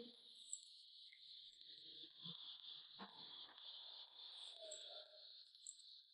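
Near silence: a faint steady high hiss, with a few faint short snips of hairdressing scissors cutting a section of wet hair.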